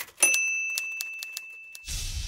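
Intro sound effect: a single bright bell ding rings out and slowly fades while sharp clicks like typewriter keys continue. Near the end a whooshing swell with a low rumble comes in.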